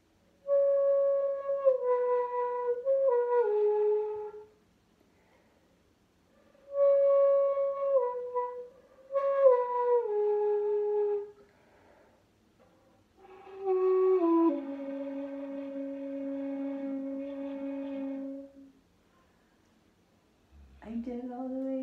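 Shakuhachi bamboo flutes playing three slow phrases, each stepping downward in pitch, with breath pauses between them; the last phrase drops to a long, low held note.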